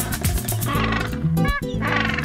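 Background music with a Humboldt penguin calling over it: several short calls in the second half.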